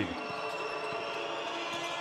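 Basketball game court sound: low, steady crowd noise in the arena with a few faint thuds of the ball bouncing on the court.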